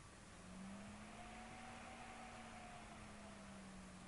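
Near silence: room tone with a faint steady hum that comes in about half a second in over a soft hiss.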